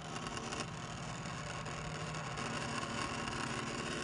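Small DC fan motor on a solar energy trainer, running steadily on power from its solar cell: a continuous whir.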